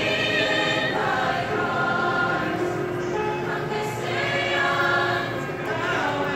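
A high school show choir of mixed voices singing together in held, sustained notes.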